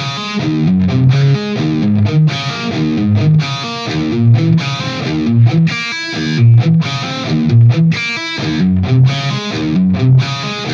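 Distorted electric guitar, a Jackson, playing a fast riff in 5/4 felt double-time, built on hammer-ons from the open E and D strings with string skipping. It runs in short repeated phrases with brief breaks, and higher notes come through twice, about six and eight seconds in.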